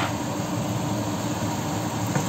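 Steady rushing kitchen noise with a low hum underneath, from the stovetop where a pan of peppers, onion and tomato sauce is cooking; no single sound stands out.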